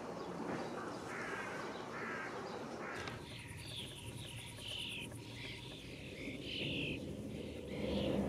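Sparrows chirping: a run of short, repeated chirps over outdoor background noise, which drops abruptly about three seconds in.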